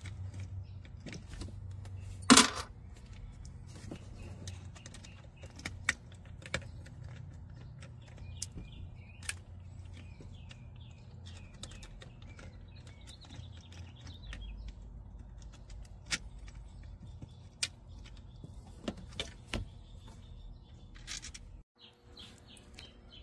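Scattered small metallic clicks and clinks of a stubby Phillips screwdriver turning out the screws of a Shurflo water pump's pressure switch housing, with one louder clank about two seconds in.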